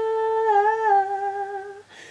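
A woman's unaccompanied voice holding one long note that wavers briefly, dips slightly in pitch, then fades out near the end.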